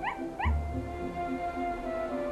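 A puppy yipping twice, two short rising yips about half a second apart, over background music.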